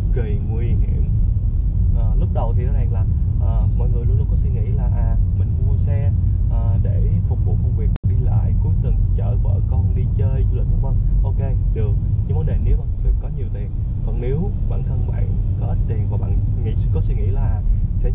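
A man talking inside a moving car's cabin over a steady low road and engine rumble, with a brief dropout about eight seconds in.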